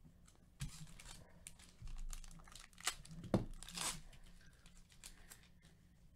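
A baseball card pack's wrapper being torn open and crinkled by hand: a series of sharp rips and crackles, the loudest about three and a half seconds in.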